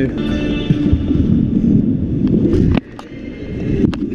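Stunt scooter wheels rolling over the skatepark surface under loud music playing in the hall. The rolling drops away suddenly with a sharp knock about three seconds in, and a short sharp clack comes near the end.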